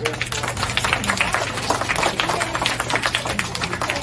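A roomful of young children clapping: a dense, uneven patter of many small hand claps.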